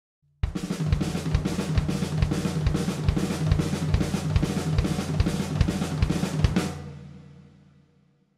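Acoustic drum kit played at full volume. Kick drum strikes on a steady pulse a little over twice a second, under snare hits and a continuous wash of cymbals and hi-hat. The playing stops near the end and the cymbals ring out and fade.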